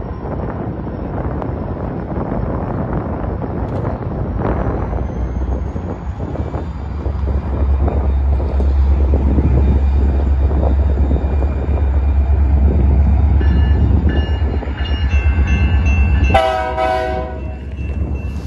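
Diesel-electric freight locomotive moving slowly, its low engine rumble growing louder about halfway through as it comes closer. Near the end the locomotive horn sounds one blast of about a second.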